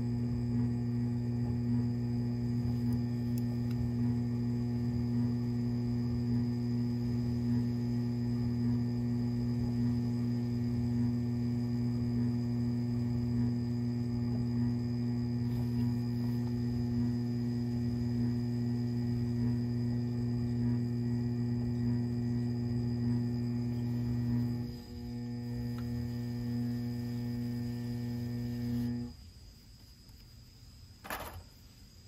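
Electric pottery wheel motor running with a steady, loud hum while a clay sphere spins on it. The hum shifts briefly about 25 seconds in, then cuts off about a second before the end as the wheel is stopped.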